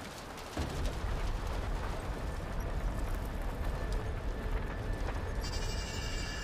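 Steady rushing, rumbling noise of the dust and debris cloud from the tower collapse engulfing the street. It starts about half a second in, and a set of thin, high, steady tones joins it near the end.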